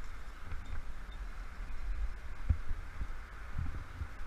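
Low wind rumble and handling noise on a helmet-mounted camera as a climber moves up rock, with a couple of dull knocks: one about two and a half seconds in, another near the end.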